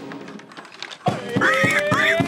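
Street brass band music: about a second in, a held brass note slides slowly upward over a few sharp drum beats.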